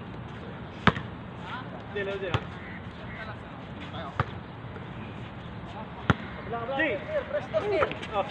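A basketball bouncing on a hard court: three sharp bounces, the first about a second in and the loudest, the last about six seconds in. Players' voices call out, busiest near the end.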